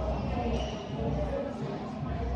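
Dull thuds of kicks landing on a guarding sparring partner, mixed with footwork on a wooden gym floor, during kickboxing sparring.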